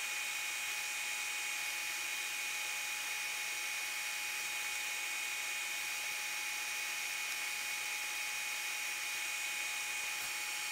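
Steady background hiss with a faint, thin, steady high whine in it, unchanging throughout.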